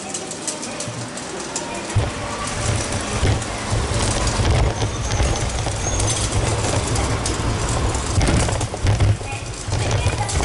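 Outdoor street and shopping-arcade ambience heard while walking, with a heavy, uneven low rumble setting in about two seconds in, and scattered light clicks above it.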